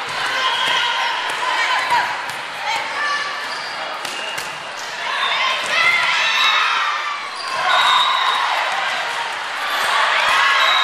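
A volleyball rally on an indoor gym court: sharp slaps of the ball being hit, short squeaks of shoes on the court, and players calling out, with louder shouting about halfway through and again near the end.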